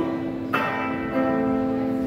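Cherman electric guitar chords ringing out with a bell-like sustain through an amplifier, a new chord struck about half a second in and the notes changing a little after a second.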